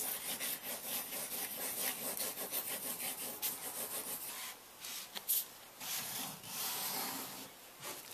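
Acrylic paint marker tip scratching over paper in quick repeated strokes, a dense scribbling. It breaks off briefly just after halfway with one sharp tick, then resumes as a smoother rub.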